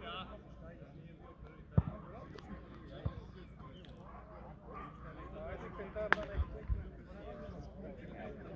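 A football being kicked and bouncing: a few dull thuds, the loudest about two seconds in, another near three seconds and a short cluster around six to seven seconds, over players' and spectators' shouting voices.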